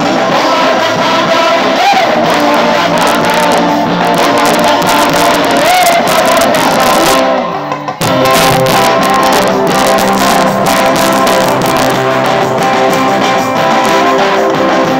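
Loud live music: a voice singing over guitar, with a brief drop about halfway before the band comes back in.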